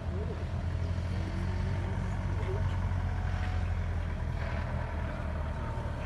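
A steady low rumble, with faint voices in the background.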